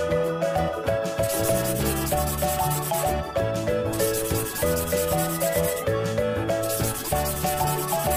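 Pentel felt-tip marker rubbing on paper as it traces thick lines, in stretches of about two seconds with short pauses, over cheerful background music.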